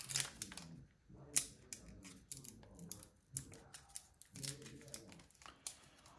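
Pokémon trading cards being handled and set down on a tabletop: an irregular run of sharp clicks and light snaps, the sharpest about a second and a half in.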